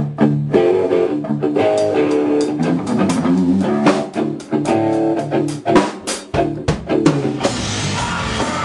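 Metal band music: guitar notes over a drum kit, with the sound growing much denser about seven seconds in as the full band comes in.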